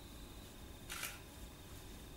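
Quiet room tone with a faint, steady, high whine and one brief soft hiss about a second in.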